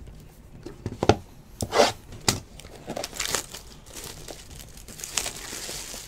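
Clear plastic shrink-wrap being torn and crinkled off a sealed cardboard box of trading cards, with a few sharp knocks as the box is handled.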